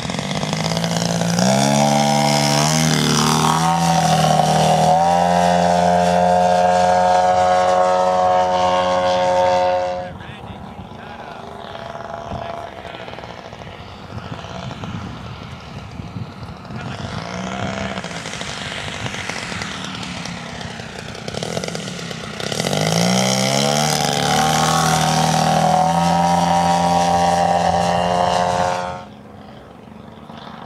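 Gasoline engine of a large radio-control model plane, a DA150 twin-cylinder two-stroke, running under power. Twice it climbs in pitch to a high, steady note and holds it for several seconds before the sound drops off sharply. In between it is quieter for about ten seconds.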